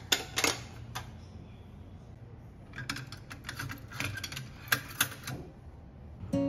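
Ceramic bowls clinking against each other and against a stainless-steel wire dish rack as they are handled: a few sharp clinks in the first second, then a quick run of clinks and rattles in the second half.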